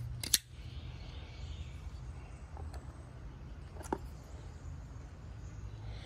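Pro-Tech automatic folding knife firing its blade open with one sharp snap about a third of a second in, then a fainter click about four seconds in, over a low steady hum.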